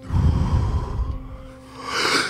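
A deep, forceful breath drawn hard through the mouth close to the microphone, then let go, one of the last breaths of a round of power breathing before the breath hold. A soft, steady music drone runs underneath.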